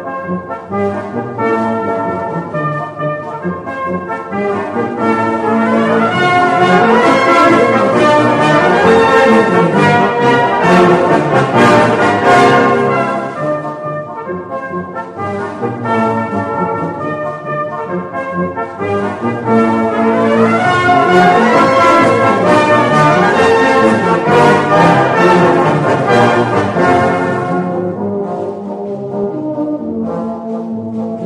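A Salvation Army brass band playing a march, with cornets, horns, trombones and basses together. The full band swells to loud passages twice, from about six to thirteen seconds in and again from about twenty seconds in, dropping to softer playing in between and near the end.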